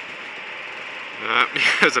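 Gas-powered go-kart engine running low and steady at slow speed, close to stalling, with wind on the microphone. The driver is keeping it alive by braking with the gas held on.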